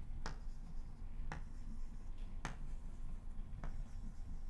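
Chalk tapped against a blackboard to mark dots, four short sharp taps about a second apart.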